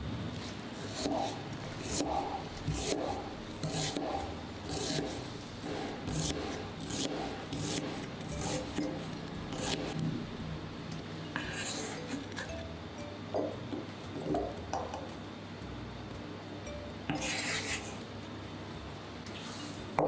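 Cleaver slicing a red onion on a plastic cutting board, the blade cutting through and knocking on the board about once a second. The strokes thin out after about ten seconds, and a longer scrape comes near the end.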